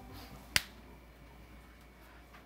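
A single sharp snap about half a second in, over faint room tone.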